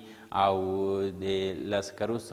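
A man speaking in a lecturing voice, with a long drawn-out stretch about a third of a second in, like a held vowel.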